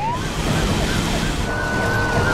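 Police car siren wailing: its pitch sweeps up at the start, then holds high and begins to slide down near the end. Underneath is the steady rush of a patrol car's engine and tyres as it speeds past.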